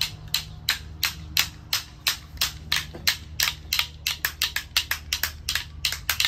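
Split-stick clapper rattles being shaken, a quick run of sharp wooden clacks at about three to four a second.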